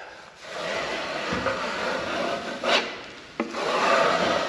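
Steel internal corner trowel scraping along the angle of firm, nearly set plaster under decent pressure, in two long strokes with a short break near the end.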